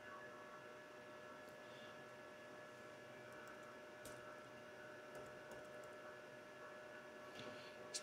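Near silence: a faint steady electrical hum of room tone, with a few faint clicks.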